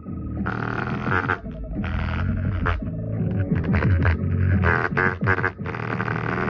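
Bass-heavy music from a small portable speaker, with an index card held on top of it buzzing in repeated bursts as the bass notes shake it.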